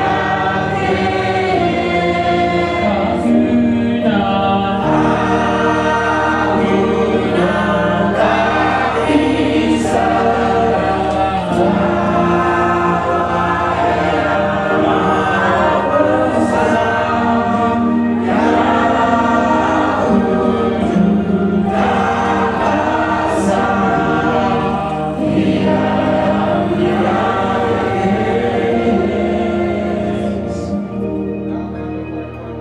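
A choir singing together, many voices over a sustained low accompaniment.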